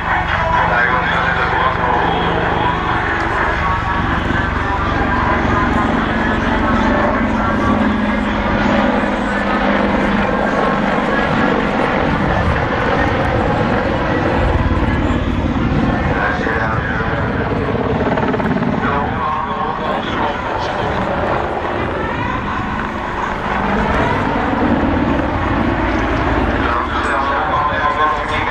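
AH-64D Apache attack helicopter flying a display, its rotor and twin turboshaft engines running loudly and steadily. The engine note slides down and back up in pitch as the helicopter passes and turns.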